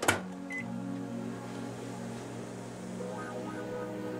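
Microwave oven being started: a click, a short keypad beep about half a second in, then the oven's steady low hum as it runs, heating a bag of microwave popcorn.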